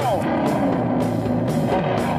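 Electric guitar played through an amplifier in a blues-rock style, with a note bent downward in pitch right at the start, over a steady beat from a drum worked by foot.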